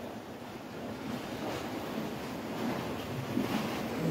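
Sea waves washing against a breakwater's concrete tetrapods, with wind on the microphone: a steady rushing noise.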